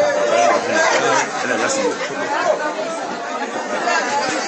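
Voices talking, several at once, in overlapping chatter.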